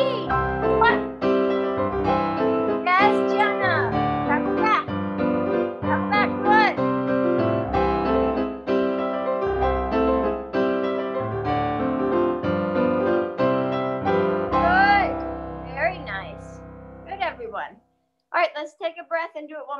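Live piano accompaniment for a ballet allegro combination, heard over a video call: lively phrases in a steady rhythm, ending on a held chord that dies away shortly before the end.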